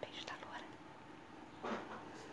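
A woman whispering softly, a few short breathy bursts in the first half second and one more near the end.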